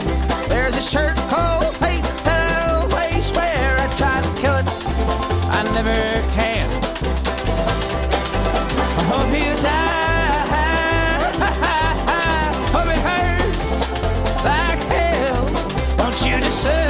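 String band playing an instrumental break on banjo and fiddle, the fiddle carrying a wavering melody over the banjo's picking, with a low bass line alternating between two notes in a steady rhythm.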